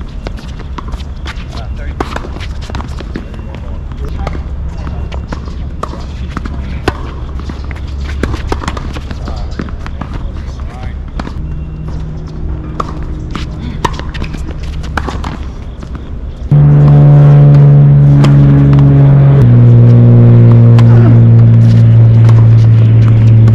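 Outdoor tennis-court ambience with a steady low rumble and sharp pops of racquets hitting the ball during rallies. About sixteen seconds in, loud music of long held chords starts abruptly, moving to a lower chord about three seconds later.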